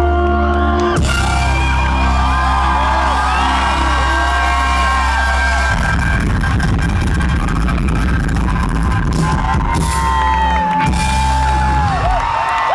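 Live rock band playing the loud close of a song, electric guitar and drums over a sustained low bass, with crowd whoops and screams rising above it. The drumming thickens about halfway through.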